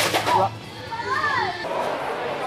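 A sharp click, then short high-pitched voices with gliding pitch, twice within about a second and a half, then the even murmur of a crowd in a large hall.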